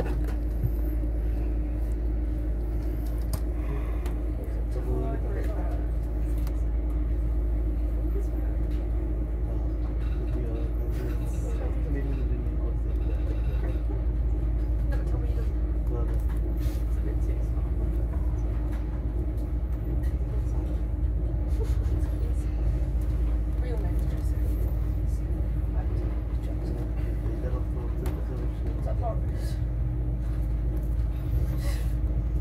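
Interior of an InterCity 125 (HST) passenger coach as the train moves off from a station and gathers speed: a steady low rumble with a constant hum underneath.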